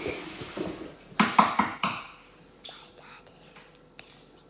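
A young girl's voice close to the microphone: a few short, loud vocal sounds about a second in, then faint whispery sounds.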